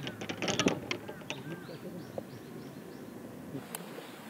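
Quiet outdoor background with a quick run of sharp clicks in the first second, then a few short chirps over a faint murmur.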